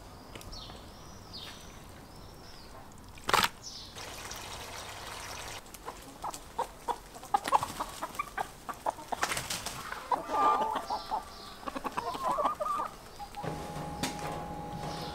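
A flock of domestic chickens clucking around food, with many quick clicks among them. Small birds chirp near the start, and there is a brief loud burst of noise about three seconds in.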